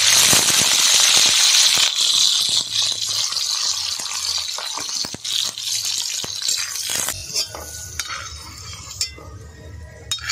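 Garlic cloves sizzling in hot oil in a large black iron wok, the hiss loudest in the first two seconds and dying down gradually. A flat metal spatula stirs and scrapes against the pan throughout, with more clicks and scrapes in the second half.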